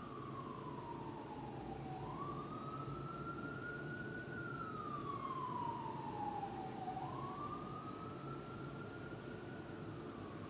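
A wailing siren, its single tone sliding slowly up and down, about one rise and fall every five seconds, over steady background noise.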